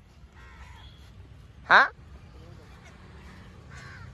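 Crows cawing faintly in the background, once about half a second in and again near the end. A short spoken "haan" cuts in just before two seconds.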